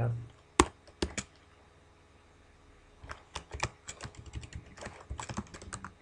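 Computer keyboard keystrokes: two sharp clicks about half a second apart near the start, a pause of about two seconds, then a run of quick, irregular keystrokes.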